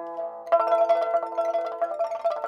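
Pipa (Chinese lute) music: a plucked note fades out, then about half a second in a fast run of rapidly repeated plucked notes begins.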